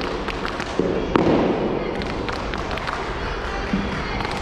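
A quick, irregular run of sharp knocks and cracks from a wushu staff routine: the wooden staff and the performer's feet striking the competition floor. The heaviest hits come about a second in.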